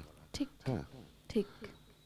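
Only speech: a few short, quiet words between longer stretches of talk.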